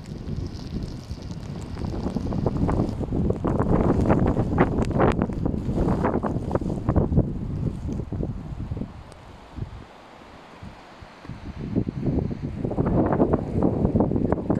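Wind of a heavy snowstorm buffeting a phone's microphone in gusts. It builds over the first few seconds, dies down about ten seconds in, and picks up again near the end.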